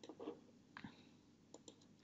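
A few faint, scattered clicks from a computer keyboard and mouse, with near silence between them, while a new line is opened in a code editor and text is pasted in.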